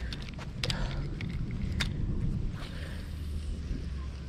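Wind rumbling on the microphone, with a few sharp clicks in the first two seconds from hands working a spinning reel and rod.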